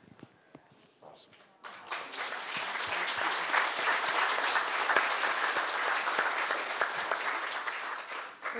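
Audience applause. It breaks out about a second and a half in after a brief hush with a few scattered claps, then goes on as dense, steady clapping.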